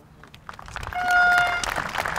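Crowd applause starts about half a second in and builds. In the middle it is topped by a held horn note lasting about half a second, the loudest sound here.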